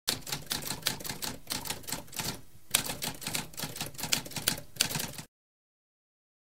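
Typewriter typing: a rapid run of mechanical key strikes with a brief pause about halfway through. It stops a little over five seconds in.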